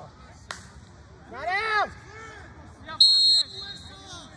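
A short, loud blast of a referee's pea whistle about three seconds in, the loudest sound, after a single sharp crack about half a second in and a loud shout near the middle.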